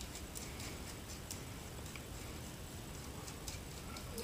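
Faint scattered ticks of small metal parts being handled as a nut is screwed by hand onto a 3/8-inch anchor bolt, over a steady low hiss.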